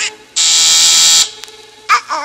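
A doorbell buzzer sounds once: one steady, harsh buzz lasting just under a second, the loudest thing here.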